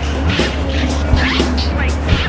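Rock band's instrumental passage with no singing: a heavy steady bass, regular drum hits and a wavering high lead line.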